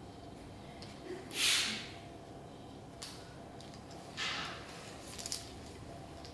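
Quiet handling of keys on a key ring: a few short rustling, jingling bursts and sharp metallic clicks, with a cluster of clicks near the end, as keys are worked onto a lanyard keychain.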